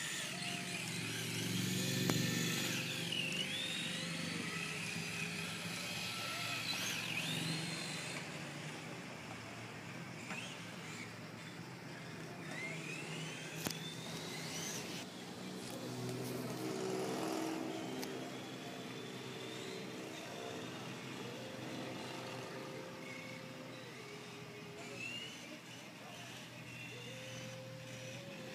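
Small electric radio-controlled car's motor whining, its pitch rising and falling as it drives.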